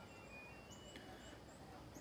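Near silence: quiet outdoor ambience with a few faint, short, high chirps, likely distant birds.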